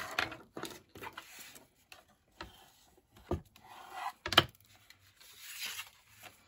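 Paper being burnished and handled: short rubbing strokes of a bone folder over a scored fold in patterned paper, with paper sliding and a couple of sharp taps. The loudest tap comes a little over four seconds in.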